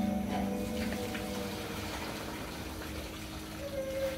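Aquarium water bubbling from an air stone, a steady fizzing and gurgling with small crackles, over a faint steady hum; background music fades out right at the start.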